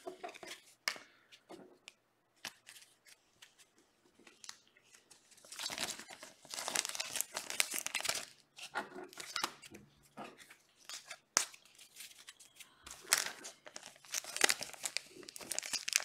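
Clear plastic card sleeves crinkling and rustling as trading cards are slid into penny sleeves and a rigid top loader, in irregular bursts with a few sharp clicks. The quieter first few seconds hold only faint handling.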